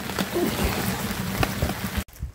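Steady rain pattering down: an even hiss with scattered small ticks of drops.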